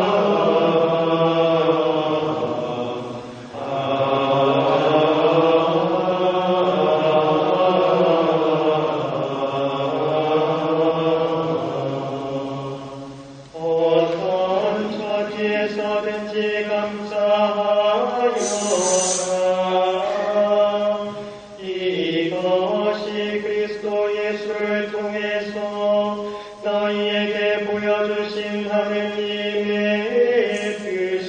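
Monks' choir singing Gregorian chant in unison over held organ notes: the Gospel acclamation between the second reading and the Gospel. Long, melismatic phrases with short pauses between them.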